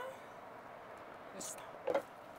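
Faint kitchen handling sounds: a short scrape about one and a half seconds in and a light knock near the end, as a glass measuring jug is set down and a spatula goes into a pot of pasta.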